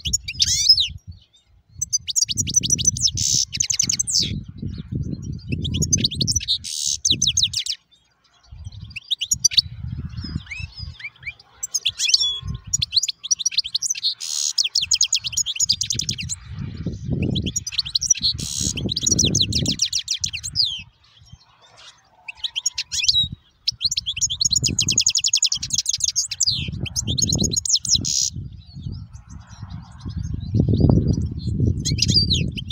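Caged European goldfinch singing: phrases of fast, high twittering and trills that repeat with short pauses between them. Low rumbling comes and goes underneath.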